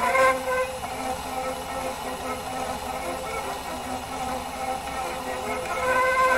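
A 78 rpm record playing acoustically through a motor-driven gramophone's horn: old recorded music that drops to a quieter passage about a second in and swells again near the end, over record surface hiss.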